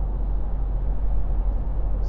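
Steady road rumble and wind noise inside the cabin of an MG4 electric car cruising on a busy A-road, heaviest in the low rumble, with no engine sound.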